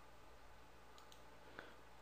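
Near silence: faint room hum, with a few faint clicks, the clearest about one and a half seconds in.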